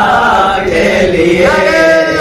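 A man's voice chanting a devotional Urdu poem in praise of the Prophet, settling into a long held note about one and a half seconds in.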